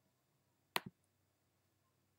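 A single computer mouse click about a second in, the button's press and release heard as two quick ticks, in an otherwise quiet room.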